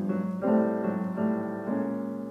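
Piano playing a sequence of sustained chords, a new chord struck about three times, in a jazz voicing with its bottom and middle voices moving.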